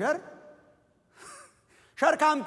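A man's voice: a short falling vocal sound at the start, then a brief breathy sigh a little over a second in.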